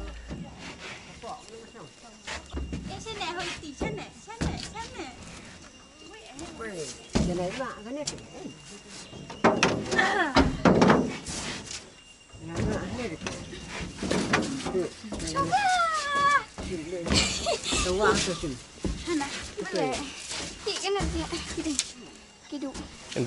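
Several people talking and laughing in a language the transcript does not catch, with occasional knocks as people and baskets settle in the back of a pickup truck.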